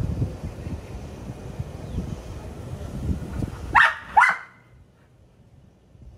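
A golden retriever barks twice in quick succession about four seconds in, two short, loud barks each rising in pitch. A low rumble comes before them.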